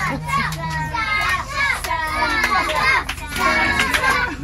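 Many children's voices chattering and calling out excitedly inside a railway carriage, over a low steady rumble.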